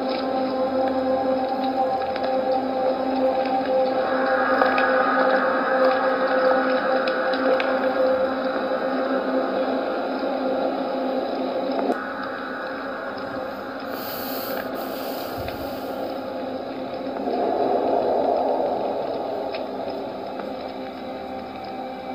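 Background music from a drama's score, made of long held notes that shift about halfway through and swell again near the end, with a brief hiss partway through.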